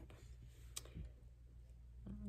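Near silence with a faint low hum, broken by a single sharp click a little under a second in.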